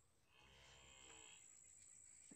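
A faint cow moo, one call lasting about a second, beginning about half a second in.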